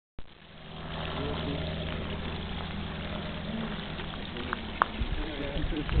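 Faint voices of people talking in the distance over a steady low hum, with two short high chirps a little before the end.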